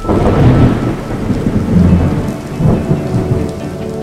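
Thunderstorm sound effect: heavy rain with rolls of deep thunder, starting suddenly and loudest in the first three seconds, easing as soft music returns near the end.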